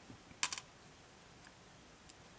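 Plastic stitch marker dropped onto a wooden tabletop, landing with a quick run of light clicks about half a second in.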